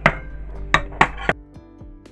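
Four sharp knocks from handling boiled potatoes in a plastic bowl, the last just over a second in. Then the sound cuts to background music.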